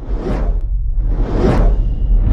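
Two whoosh sound effects over a steady deep rumble, as on an animated end title: one swells and fades about a third of a second in, the second peaks near the end.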